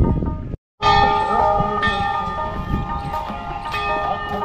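Metal temple bells ringing, struck again and again so that their tones overlap and hang on. Before them comes a short low rumble that cuts off in a moment of dead silence at an edit.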